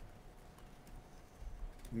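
A pause in speech: low steady room hum with a few faint clicks near the end, just before a man's voice picks up again.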